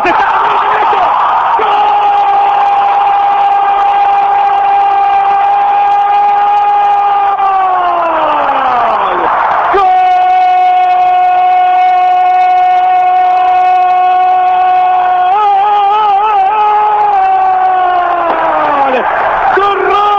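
A football radio commentator's long, drawn-out goal cry, "¡Gooool!", held on one high pitch for about seven seconds and sliding down. It starts again at about ten seconds in with a second held cry that wavers and falls away near the end.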